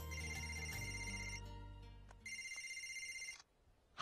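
Phone ringtone ringing twice, each ring a steady electronic tone lasting a little over a second, with a short gap between. A low hum under the first ring fades out.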